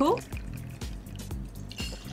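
White rum poured from a glass bottle into a steel jigger, a faint liquid trickle, then tipped from the jigger into a stainless cocktail shaker tin, over soft background music.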